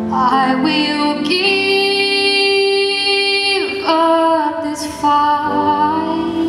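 A woman singing solo, holding one long note from about a second in that slides down in pitch at its end, then going on with shorter notes.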